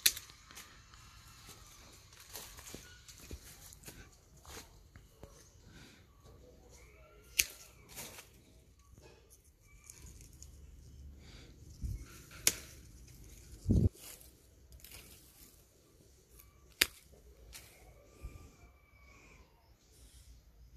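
Hand pruning shears snipping twigs and leaves off a small tree: a few sharp snips spaced several seconds apart, mostly quiet between, with one dull knock about two thirds of the way through.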